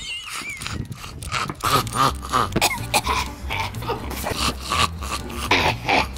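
A man coughing and clearing his throat, close to the microphone, in rough irregular bursts.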